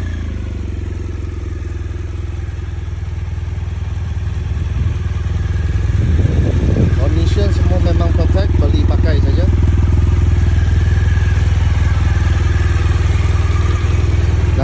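2018 BMW R1200GS boxer-twin engine idling steadily, just started, growing louder about six seconds in.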